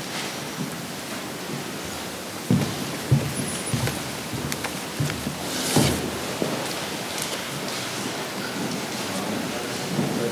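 Congregation moving about in a large church hall: a steady hiss with scattered soft thuds and knocks from footsteps and pews, and faint murmuring. The loudest knocks come about a third of the way in and just past the middle.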